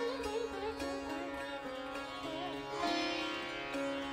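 Soft background music: a steady drone under a melody of plucked notes that bend and glide in pitch.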